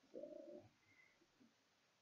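A person's voice holding a drawn-out 'so' for about half a second, then near silence.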